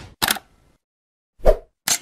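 Short animation sound effects: a brief high tick just after the start, a louder plop about one and a half seconds in, and a quick double click near the end.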